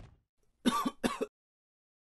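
A person clearing their throat: two short bursts, the second following about half a second after the first.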